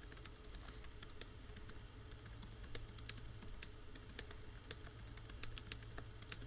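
Faint computer keyboard typing: irregular, quick keystroke clicks over a low steady hum.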